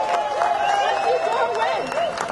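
Speech: a woman talking into a handheld microphone, in words the recogniser did not transcribe.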